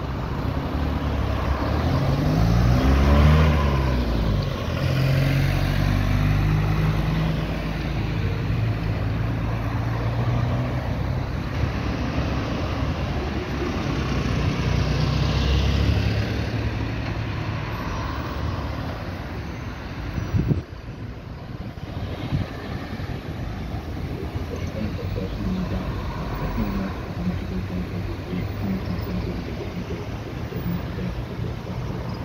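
Road traffic circling a roundabout close by: cars and a minibus drive past one after another, their engine noise swelling and fading as each goes by, loudest about three seconds in. A single sharp knock about two-thirds of the way through.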